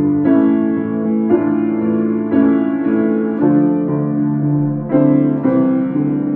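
Furstein upright piano played with both hands: sustained chords and melody notes, with new chords struck about once a second.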